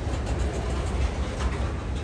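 Freight cars rolling slowly past, with a steady low rumble of wheels on rail and a few faint clicks.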